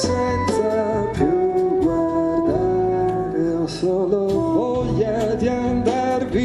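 Live song: a man sings a slow melody in Italian over grand piano chords, with hand drums and cymbal strokes accompanying.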